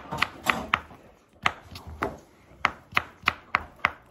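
Knife dicing zucchini on a cutting board: a quick run of sharp taps of the blade on the board, with a brief pause about a second in.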